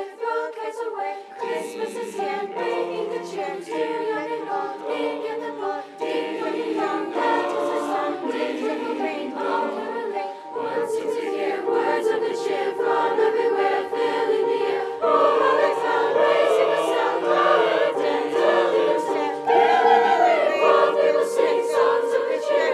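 A large mixed high-school choir singing in sustained harmony, swelling louder in the second half.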